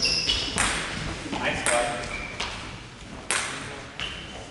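Sports shoes squeaking briefly on a sports-hall floor as players move about, with a few sharp clicks of a table tennis ball, the loudest near the end.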